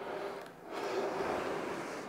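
Aviron indoor rowing machine's flywheel whirring through a rowing stroke. The sound dips briefly at the catch, then swells and holds steady through the leg drive at a 24-strokes-a-minute rhythm.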